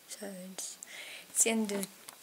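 Only speech: a young woman's voice talking softly in short phrases, close to the microphone.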